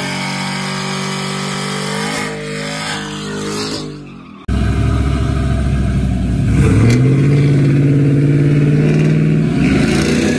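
A pickup's engine runs loudly, then fades about four seconds in. After a sudden cut, the engines of two Chevrolet Silverado pickups staged side by side at a drag-race start line are revved: the pitch dips and climbs just before the middle, is held high and steady, and begins rising again near the end.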